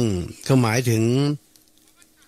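Speech only: a man speaking Thai, with a long, wavering vowel, then a pause for the last half second or so.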